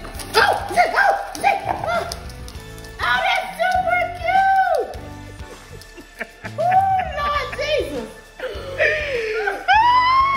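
A woman's drawn-out cries and exclamations, rising and falling in pitch in several bouts, over background music.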